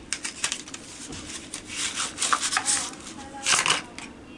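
A cardboard pencil box being opened and a bundle of wooden pencils pulled out: rustling and scraping with light clicks of pencils knocking together, loudest near the end.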